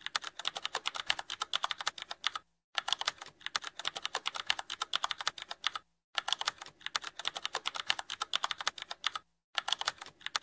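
Computer keyboard typing sound effect: a rapid, steady run of key clicks, with short breaks about two and a half, six and nine and a half seconds in.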